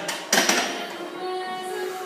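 Background music playing in a gym, with one sharp metallic clank about a third of a second in.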